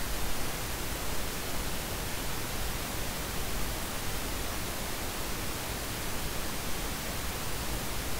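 Steady, even hiss of the recording's background noise, with no other sound standing out.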